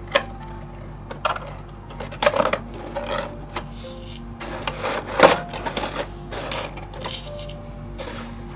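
Stiff cardstock rustling and tapping as a layered paper shadowbox is turned and pressed together by hand: scattered short rustles and sharp taps, the loudest about five seconds in. Quiet background music runs underneath.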